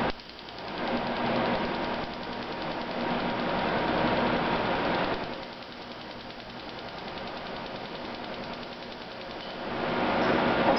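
Pulsed laser cleaning machine running, its beam ablating a metal semiconductor socket: a steady buzzing hiss with a fine, rapid crackle over a low machine hum. It is louder for the first five seconds, drops lower, then swells again near the end.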